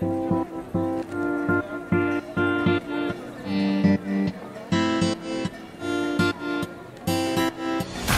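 Background music: a guitar strumming chords in a steady rhythm.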